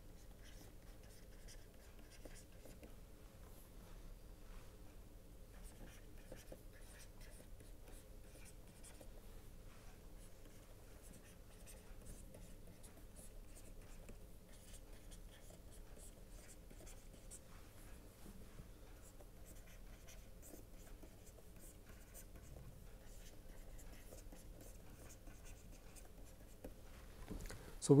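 Faint scratching and tapping of a stylus writing on a pen tablet, over a low steady hum.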